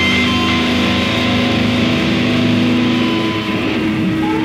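Rock band playing live with guitars to the fore, holding steady chords with no singing.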